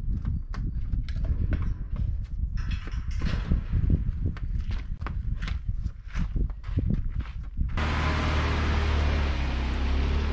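Footsteps on the steel stairs of a fire lookout tower, sharp knocks about twice a second. About three-quarters of the way through they give way to a Jeep Wrangler driving on a dirt road: a steady low engine hum with tyre noise on the dirt.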